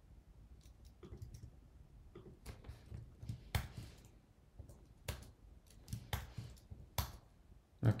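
Scattered, irregular keystrokes on a computer keyboard, about a dozen short clicks over several seconds.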